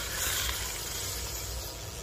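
A Daiwa Long Cast spinning reel cranked by hand: a steady, even whirring of its gears and rotor. The retrieve runs smooth, a sign the used reel is in good working order.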